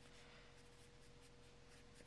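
Faint strokes of a wet-erase marker writing letters on paper.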